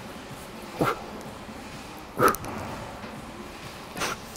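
A man grunting twice with effort, short strained vocal sounds about a second in and just past two seconds, as he pulls a heavy barbell.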